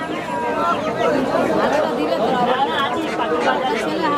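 Several people talking over one another: steady chatter of voices.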